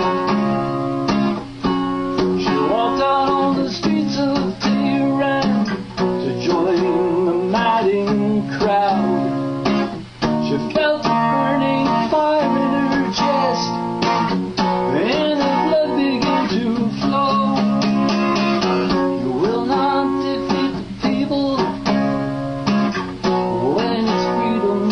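Acoustic guitar strummed in a steady rhythm, with a man singing a slow ballad over it.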